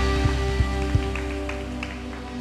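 Live worship band's music fading out as a song ends: a held chord dies away over the keyboard, getting steadily quieter.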